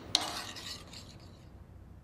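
Metal spoon beating snail butter into porridge oats in a stainless steel pan, scraping against the pan. One last stroke comes just after the start, and the sound then dies away to quiet by about a second and a half in.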